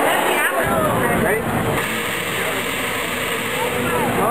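Indistinct voices of people talking over a steady, noisy background rumble; the mix shifts about two seconds in.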